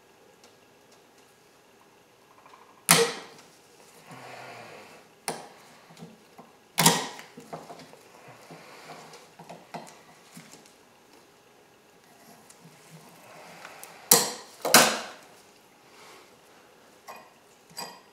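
Hand work with metal pliers on a rubber boot of a steering shaft: sharp snaps and clacks about three, five and seven seconds in, then a close pair near fifteen seconds, with quieter rubbing and creaking in between as the boot is forced over the shaft.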